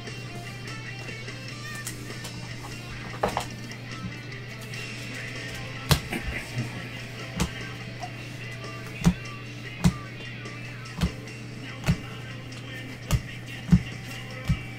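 Background music under a steady low hum, with short sharp clicks about once a second in the second half from trading cards being flicked through and tapped down by gloved hands.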